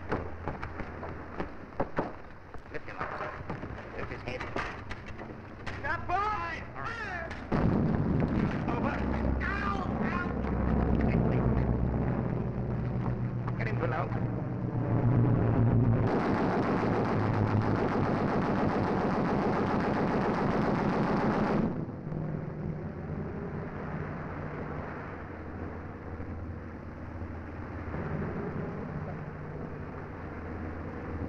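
Ship's anti-aircraft guns firing in an old film soundtrack: scattered shots with shouting for the first several seconds, then a loud, dense, sustained barrage that cuts off suddenly about two-thirds of the way in. A quieter steady rumble follows.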